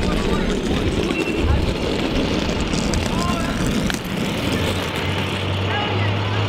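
City street traffic noise, a loud steady rumble, with a deeper steady engine hum coming in about halfway through and faint voices in the background.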